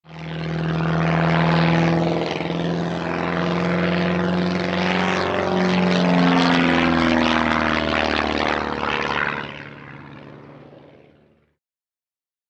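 Propeller plane engine drone, steady with its pitch wavering as it passes, then fading away over the last few seconds.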